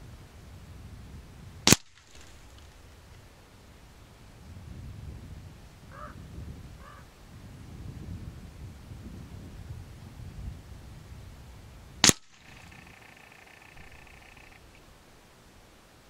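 Theoben Rapid .25 calibre pre-charged pneumatic air rifle fired twice, two sharp cracks about ten seconds apart, with wind rumbling on the microphone between them.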